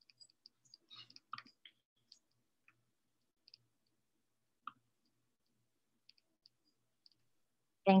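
Sparse faint clicks and ticks over a near-silent video-call line, with one sharper click a little past the middle.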